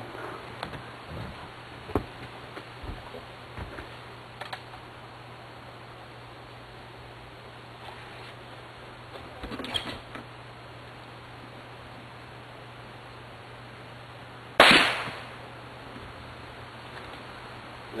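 A .22 pellet gun fires once, a single sharp pop about three-quarters of the way through, its sound fading over about a second. The pellet strikes a shaken-up can of beer, which is knocked off its perch and bursts open.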